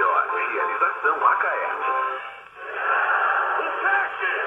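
Shortwave broadcast on 5940 kHz (49-metre band) played through the small speaker of a Motobras Dunga VII portable receiver: a voice, thin and tinny, with a short drop in level about two and a half seconds in.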